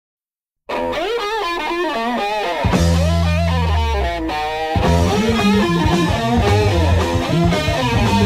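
1970s hard blues rock recording: after a moment of silence, an electric guitar opens with bending, wavering notes. Heavy low bass notes join about two and a half seconds in, and the band fills out about five seconds in.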